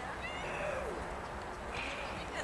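Young footballers' high-pitched shouts and calls on the pitch: short rising and falling cries near the start and again late, over steady outdoor noise.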